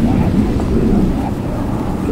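Low, even rumbling rustle of a large congregation moving down into prostration: many bodies, robes and knees shifting on the prayer mats at once, carried by the hall's sound system.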